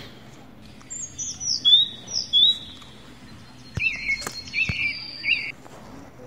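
A bird chirping in two short bouts of high whistled notes, one about a second in and one near four seconds, with a few faint clicks.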